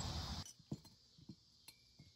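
A loud rushing noise cuts off abruptly about half a second in. After it come a few light metallic clinks as a trailer wheel hub and its lug studs are handled.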